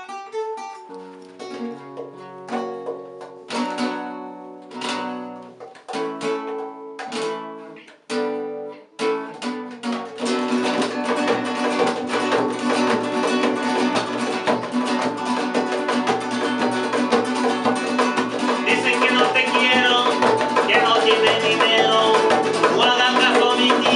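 Nylon-string classical guitars playing a flamenco-style rumba. The first ten seconds are an intro of separate struck chords and plucked notes with pauses between them. About ten seconds in, the playing turns into steady, dense rumba strumming with a hand drum.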